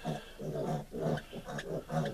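Piglets grunting in a run of short, low calls.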